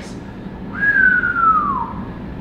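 A person whistling one long note that slides down in pitch, starting about a third of the way in and stopping shortly before the end.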